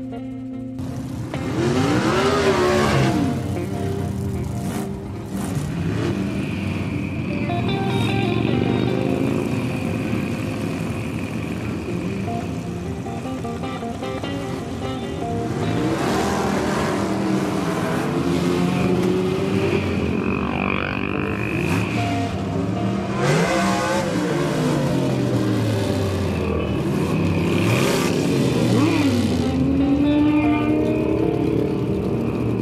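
A stream of motorcycles riding past one after another, their engines rising and falling in pitch as each bike passes close by.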